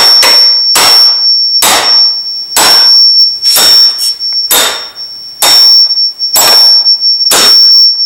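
Hammer striking a steel punch to drive an upper door hinge pin out of its hinge, nine sharp metal-on-metal strikes at a steady rate of about one a second. A steady high-pitched tone runs under the strikes.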